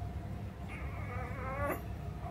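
A newborn puppy whimpering: one thin, high whine of about a second that rises in pitch and breaks off.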